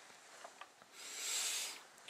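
A person's single breath, a soft hiss that swells and fades over about a second in the middle of a pause in speech.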